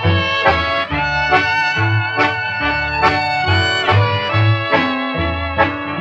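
A 1940s country string band playing an instrumental passage between vocal lines, heard from a 78 rpm record: held melody notes changing about every half second over a steady, pulsing bass line.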